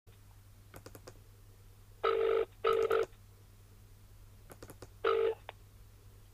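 British telephone ringback tone heard down the line while the called number rings: a double ring, then a further ring about two seconds later that is cut short, followed by a click. Faint clicks sit on the line between the rings.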